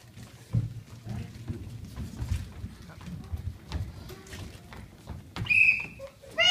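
Irregular low thuds of children's footsteps on a wooden stage floor, then near the end a short, loud, high-pitched cry.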